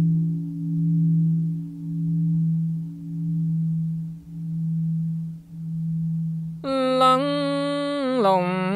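Buddhist temple bell ringing out in a long low hum that swells and fades about once a second. Near the end a man's chanting voice comes in on a long held note of the bell-invoking verse.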